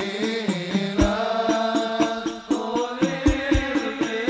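Sholawat hadrah music: a sustained, melismatic sung line over hand-beaten rebana frame drums playing a quick, steady rhythm with deeper strokes among lighter taps.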